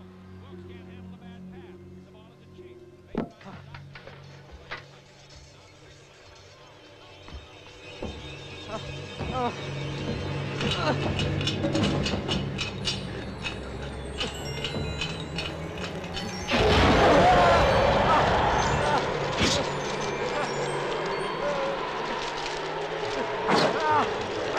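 Horror film soundtrack: a low held music chord and a couple of knocks give way to a rising rush of noise. The noise jumps suddenly loud about two-thirds of the way in and is full of sharp cracks and knocks.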